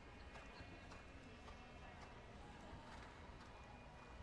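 Faint, soft hoofbeats of a horse cantering on sand-and-dirt arena footing, a few muffled thuds a second over a low steady hum.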